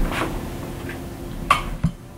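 A PVC pipe knocks on a wooden workbench as it is set down, then two sharp clicks come from handling a longer length of PVC pipe, about one and a half seconds in and again near the end.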